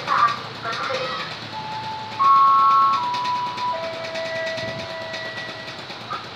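An electronic chime melody of held notes, plausibly from the level crossing's warning loudspeaker, following a moment of recorded voice. It steps through several pitches, loudest where two notes sound together about two seconds in, then settles on lower notes.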